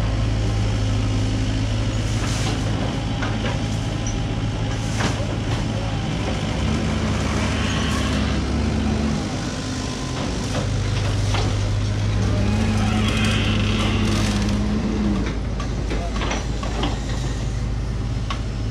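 Hydraulic excavator's diesel engine running steadily and labouring twice under hydraulic load as its crusher squeezes scrap steel, with a few sharp knocks between.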